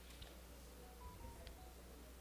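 Near silence: room tone with a steady low hum, a few faint short tones about a second in, and a couple of faint clicks.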